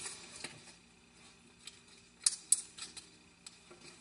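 A sheet of paper being folded and creased by hand: soft rustling with scattered crisp crackles, the two sharpest about two and a half seconds in.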